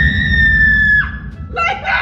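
A young woman's long, high-pitched scream, held at one pitch and breaking off about a second in, followed by bursts of laughter.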